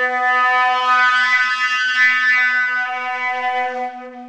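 Sterling-silver Eastman 420 flute sounding one long held low note with the player softly singing into it at the same time (throat tuning). The note fades out near the end.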